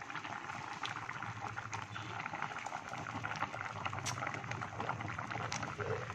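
A large pot of broth at a full rolling boil, bubbling and crackling steadily. A single sharper click sounds about four seconds in.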